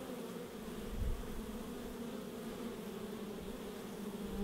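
Honey bees buzzing: a steady, even hum of many wings.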